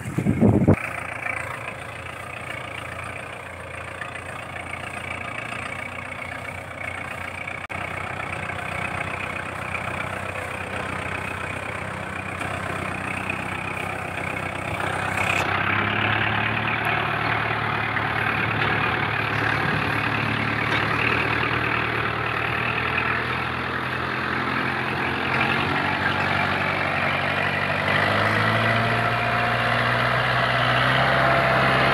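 Kubota MU4501 tractor's four-cylinder diesel engine running steadily while it pulls a fully loaded trailer through mud. It gets louder about halfway through, and there is a brief loud burst of noise at the very start.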